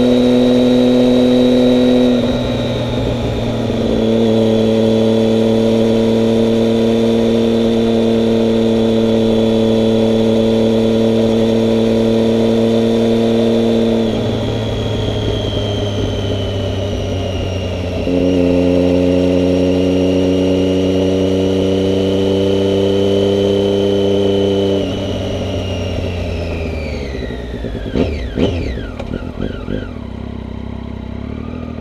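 Motorcycle engine running steadily at highway speed, heard from the rider's seat with a thin high whine above it. Its note drops away twice for a few seconds as the throttle eases, then falls in pitch near the end as the bike slows, with a few knocks and a short laugh at the close.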